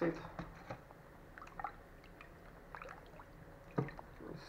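A metal ladle stirring watermelon cubes in water in a stainless steel pot: faint liquid sloshing with light scattered clinks, and one sharper knock near the end.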